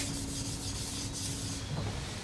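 Soft rubbing on a violin bow as it is handled, with a faint steady tone for about the first second and a half.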